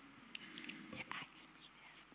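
A quiet room with a few faint, scattered clicks and soft rustles, small handling noises near a microphone.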